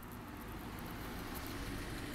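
Faint steady background noise with no speech, slowly growing a little louder; the kind of low rush that distant traffic makes.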